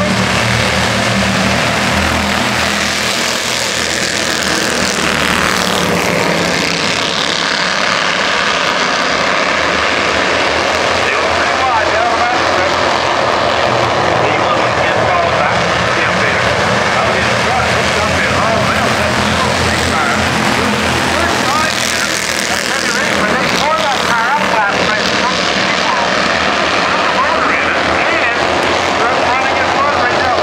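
A pack of Bandolero race cars running at speed, their small engines buzzing loudly, with pitch rising and falling as cars pass and change throttle. Voices from the crowd mix in.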